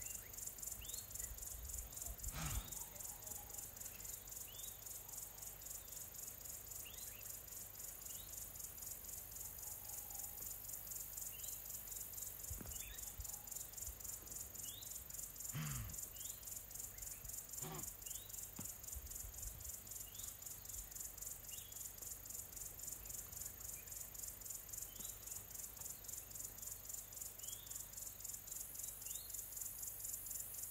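Insects, crickets by their sound, trilling in a fast, even, high pulsing. Short falling bird notes come every second or two, and a few brief low sounds break in around the start and middle.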